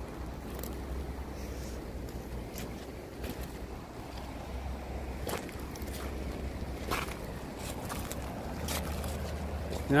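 Footsteps crunching on river-bank pebbles, a handful of separate steps, over a steady low wind rumble on the microphone.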